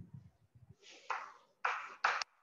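Chalk scraping on a chalkboard in two strokes as a label is written, the second stroke the louder, after a few soft low thumps near the start.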